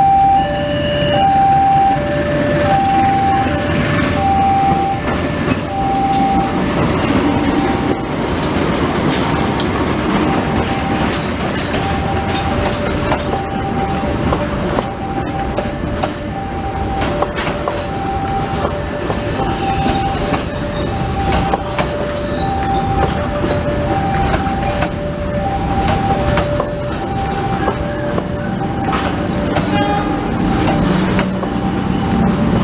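A level-crossing warning alarm sounds an alternating two-tone chime, about one high-low pair a second. Under it a diesel-hauled passenger train rolls through the crossing with a steady rumble of wheels on rail.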